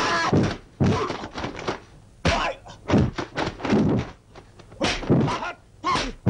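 Dubbed punch, kick and block impact effects in a kung fu film fight, a quick run of about eight heavy thwacks across six seconds.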